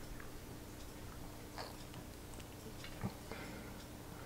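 Faint, sparse plastic clicks and taps from handling an e-liquid squeeze bottle pressed into a vape pod's fill port, the sharpest click about three seconds in, over a steady faint hum.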